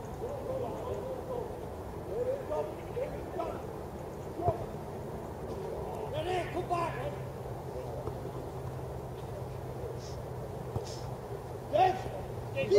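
Distant shouts and calls of footballers on an outdoor pitch, with one sharp knock about four and a half seconds in. A low steady hum starts about halfway and runs on under the voices.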